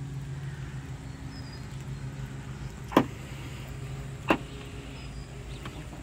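Steady low mechanical hum, like a motor running, with two sharp clicks, about three seconds in and again just over a second later.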